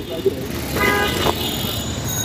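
A vehicle horn gives one short toot of about half a second, over steady street traffic noise.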